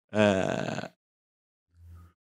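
A man's voice: one wordless grunt close to the microphone, lasting under a second.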